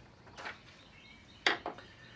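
Light clicks of small objects handled on a workbench mat: a pencil set down and an ultrasonic transducer picked up. A soft click near the start, then a sharper click about halfway through with a second one just after.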